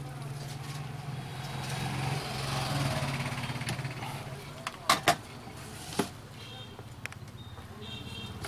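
Desoldering a filter capacitor from an amplifier circuit board with a soldering iron, over a steady low hum. A few sharp clicks come about five and six seconds in as the capacitor is worked loose.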